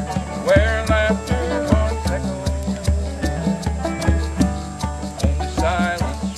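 An acoustic string band playing an instrumental passage: plucked strings over a steady drum beat of about two to three thumps a second, with a wavering melody line coming in near the start and again near the end.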